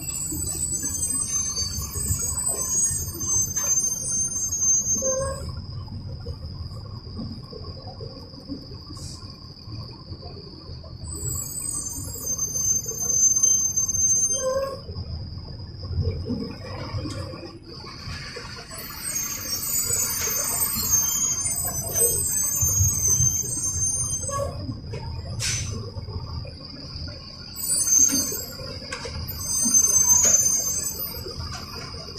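A Mercedes-Benz 1570 bus heard from inside the cabin while driving: a low engine and road rumble that swells and eases, over a thin constant high whine. Patches of high hiss come and go, around the start, about 11–14 s in, about 18–25 s in and again near the end.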